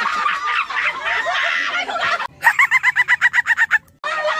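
People laughing, then a fast, even run of high clucking calls like a hen's cackle, about eight a second, cutting in abruptly past the halfway point and stopping just as suddenly near the end.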